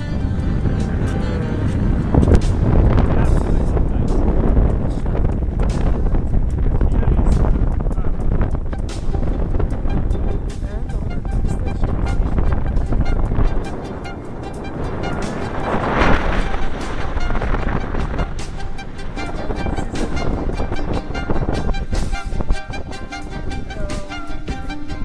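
Wind buffeting the microphone in a low rumble, strongest in the first half and easing a little after about 13 seconds, with music underneath.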